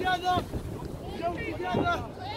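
Players' voices calling out across an open field, in two short bursts, with wind rumbling on the microphone.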